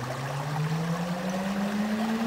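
Water washing and trickling in a gold pan of black sand concentrate, with a low steady hum underneath that rises slowly in pitch.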